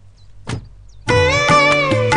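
Dramatic background score comes in about a second in: a plucked-string melody with bending notes over a low steady drone. Before it there is a faint low hum and one short sharp sound about half a second in.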